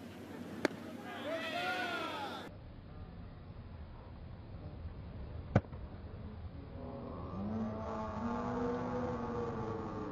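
Baseball smacking into the catcher's mitt with a sharp pop, once about half a second in and again, louder, about five and a half seconds in. Stadium crowd voices rise and fall around the catches, most strongly near the end.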